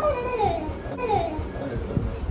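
Young children's voices at play, with short calls that fall in pitch about half a second and a second in.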